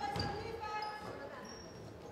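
Basketball dribbled on a hardwood gym floor: a couple of low thumps near the start, under faint gym sounds.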